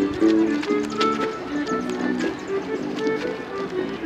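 Irish dance music, a quick run of short notes, with the clicks of dancers' shoes striking pavement in time.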